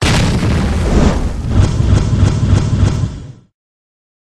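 A loud explosion-style sound effect for a logo sting. It starts abruptly, then from about halfway through carries a run of sharp hits, about three or four a second, and cuts out about three and a half seconds in.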